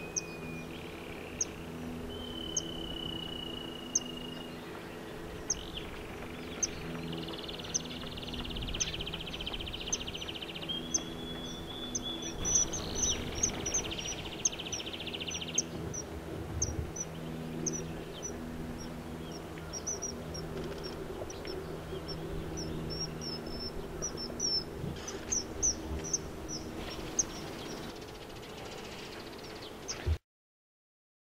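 A common kingfisher gives a string of short, high-pitched call notes, about one a second at first and coming faster through the middle and later part. It is apparently the female calling to her mate.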